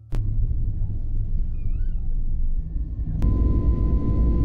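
Loud, steady low rumble of a jet airliner's engines. About three seconds in there is a click, and a thin steady whine joins the rumble.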